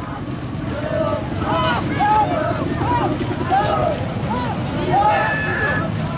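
Voices shouting in short rising-and-falling calls, roughly two a second, over steady wind noise on the microphone. A brief steady whistle-like tone sounds near the end.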